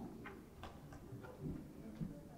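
A few faint, irregular clicks and taps, about four in just over a second, over a low murmur of voices.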